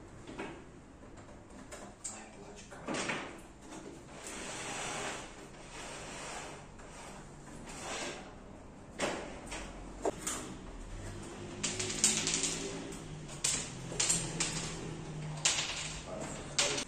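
Plastic housing of a Yamaha PSR-730 electronic keyboard being pried open and its top shell lifted and moved: irregular knocks, clatters and scrapes of hard plastic, loudest in the second half.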